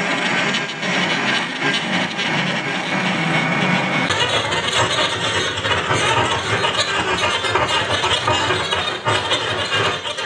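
Dense, continuous noise drone from a live experimental improvisation on saxophone and electronics. About four seconds in, the texture shifts and grows fuller in both the low and the high end.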